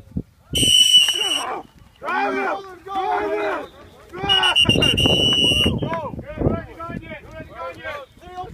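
Two shrill blasts of a coach's whistle, each about a second long and about four seconds apart, with players shouting between and after them.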